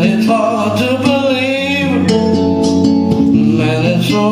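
Live solo performance: a man playing an acoustic guitar while singing a long, wavering wordless note about a second in, over changing chords.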